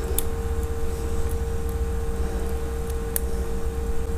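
Steady low hum with a faint steady tone over it, and two light clicks, about a quarter second in and near the end, from a plastic mobile-phone housing frame being handled and fitted.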